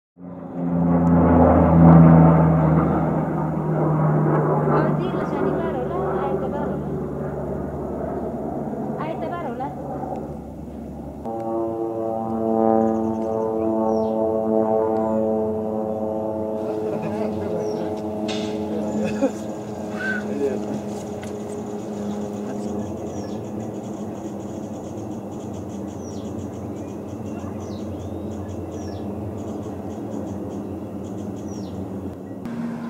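Twin-engine turboprop plane on approach, a steady droning with a clear pitch that changes abruptly about eleven seconds in. Birds chirp faintly above the drone in the second half.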